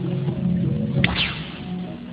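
Gamelan accompaniment of a wayang kulit performance playing softly with steady low tones, broken about a second in by one sharp crack of the dalang's percussion.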